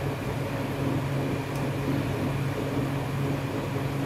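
Steady low hum of running machinery, an even drone with no change in pitch or loudness.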